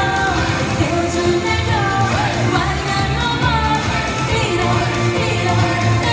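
A woman singing a pop song into a microphone over loud amplified backing music with a steady bass line.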